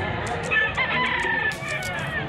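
Rooster crowing, starting about half a second in.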